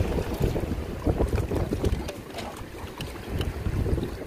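Wind buffeting the microphone over choppy tidal river water, a gusty low rumble. Scattered short knocks and rustles come from the rope and jacket being handled close by.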